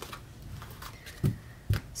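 Tarot cards being handled over a soft cloth: quiet rustle with two brief taps half a second apart in the second half.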